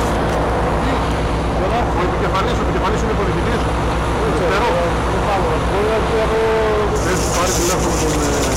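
A heavy engine running steadily under the murmur of several people talking at a distance; a hiss sets in about seven seconds in.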